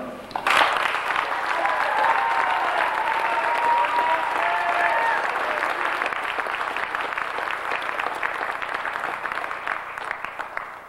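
Audience applauding, starting about half a second in and going on steadily, fading near the end, with some cheering voices over it in the first half.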